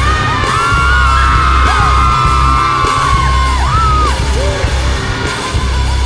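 Loud live concert music with a heavy, pulsing bass, and long held shouts gliding up and down over it during the first few seconds.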